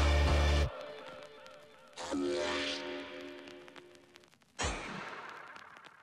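Music with a heavy bass line cuts off abruptly within the first second. Two whooshing logo sound effects follow, one about two seconds in carrying a few held tones and a sharper one near five seconds, each fading away.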